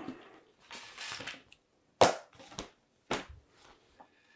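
A hand file scraping on a thin metal blade in a few short strokes: a soft stroke about a second in, then two sharper, louder strokes at about two and three seconds.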